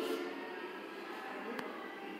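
A voice trailing off at the very start, then quiet room background with one faint click about one and a half seconds in.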